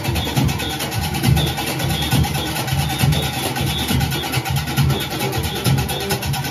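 Junkanoo back-line playing: goatskin drums booming in a steady, fast beat under the rapid clanging of many cowbells.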